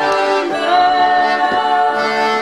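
Live folk music: several voices singing sustained notes in harmony, with an accordion playing along.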